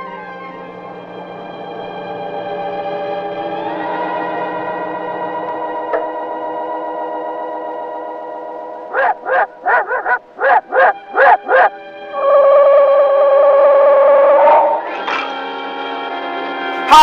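Old sci-fi film soundtrack: sustained, eerie held chords. Then, about nine seconds in, comes a quick run of short pulsing electronic sounds at about three a second. After that, a loud warbling electronic tone holds for nearly three seconds and cuts off.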